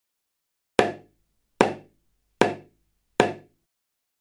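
Four even strikes on a small drum with a beater, a little under a second apart, each dying away quickly. The four beats count out the riddle's answer: four.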